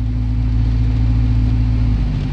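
Car engine and road noise heard inside the cabin while driving: a steady low drone with a constant hum.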